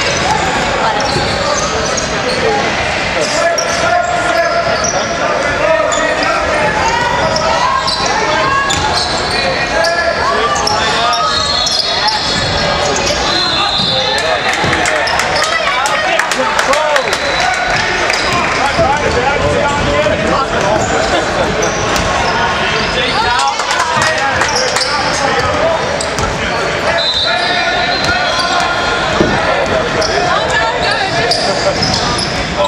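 Basketball game in a large echoing gym: the ball bouncing on the hardwood court, short high sneaker squeaks a few times, and players' and spectators' voices throughout.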